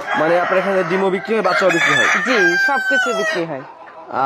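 Tiger chickens in a poultry shed, a rooster crowing with clucking around it, heard together with a person's voice; a thin high note of the crow trails off in the second half.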